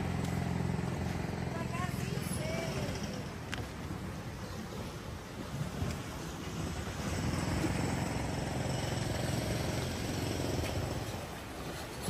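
Steady low rumble of wind on the microphone over outdoor beach ambience, with no distinct event.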